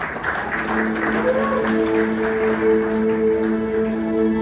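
Audience applause dies away as a soft, sustained chord comes in about half a second in. Long held notes ring steadily, with a brief sliding note near the middle: the slow opening of an improvised instrumental.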